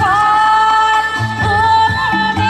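A woman sings into a microphone through a PA system, holding one long, slightly wavering note over a backing track with a repeating bass line.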